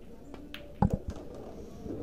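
Pool balls on a table: sharp clicks of a shot, with the loudest knock of ball on ball a little under a second in and a lighter click just after, as the last ball of the rack is pocketed to finish the run-out.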